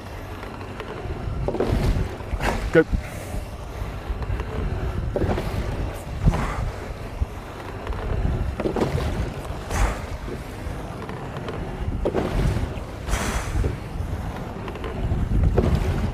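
Sculling oars of a double scull rowed full slide with square blades. Each stroke gives a pair of sharp blade-and-oarlock sounds about a second apart, at an easy warm-up rate of roughly one stroke every three and a half seconds, with wind noise on the microphone.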